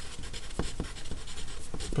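Wooden pencil writing on graph paper: a quick run of short, irregular scratches as the letters are drawn.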